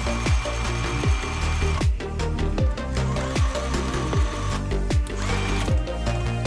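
Electronic background music with a steady beat of about two kicks a second. Under it, a Stitch Master heavy-duty sewing machine runs in three short bursts, with a motor whine, as it stitches through thick blue fabric.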